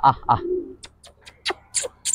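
Domestic pigeons cooing: one short low coo about half a second in, among a run of quick sharp clicks.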